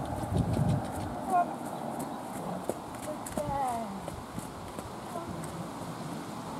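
A horse trotting on a sand arena surface, its hooves making soft, dull hoofbeats, with a voice in the background.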